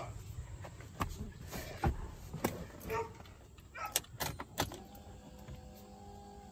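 Scattered light clicks and knocks from handling at the open driver's door and cab of a pickup truck as someone reaches in to the dash. Near the end a faint steady tone comes in.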